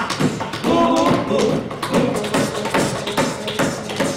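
Hands slapping and tapping a wooden tabletop in a quick, uneven rhythm, with voices over the beat.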